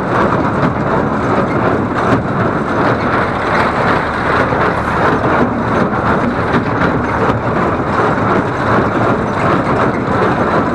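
Welger AP 53 conventional baler running off a Fordson Dexta tractor, its pickup taking in straw fed by hand. Baler and tractor together make a loud, steady machinery noise.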